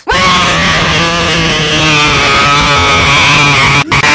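Extremely loud, deliberately overdriven scream-like meme sound effect ("earrape"), harsh and distorted with a wavering pitch. It cuts out for an instant just before the end, then resumes.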